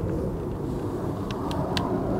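Steady low outdoor rumble, with a few light clicks in the second half.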